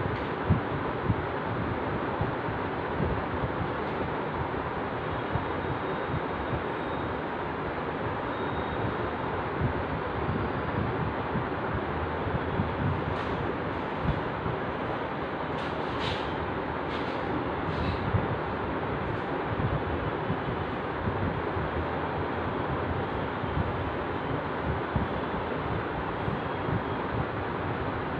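Steady rushing background noise with no voice, with a few faint clicks about halfway through.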